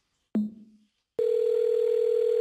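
A click on a telephone line, then a steady telephone call-progress tone that starts about a second in and cuts off suddenly.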